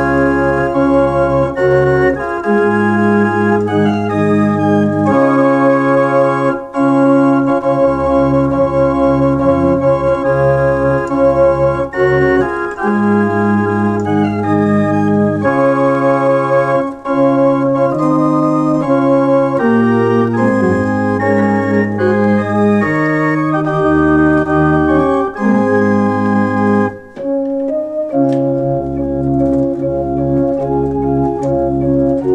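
Toggenburg house organ, a small Swiss farmhouse pipe organ, playing a traditional folk melody: held chords over a bass line that changes note every second or two, with brief pauses between phrases.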